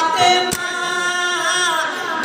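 A male lead voice sings a Muharram marsiya lament into a microphone, with a group of men's voices joining in. There is one sharp beat about a quarter of the way in.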